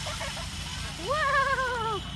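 One long, high-pitched excited cry from a person's voice, starting about halfway through and falling slowly in pitch.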